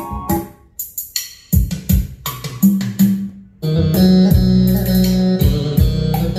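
Recorded band music with guitar and drums played back through Yamaha NS-2835 tower speakers. It opens sparse, with single plucked notes and hits, and the full band with steady bass comes in a little past halfway.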